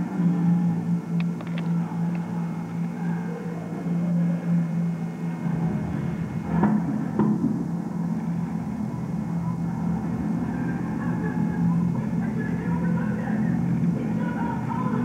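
Amplified show sound from an outdoor stage: a sustained low droning tone. A deep rumble joins it about five and a half seconds in, and two sharp bangs come around the middle.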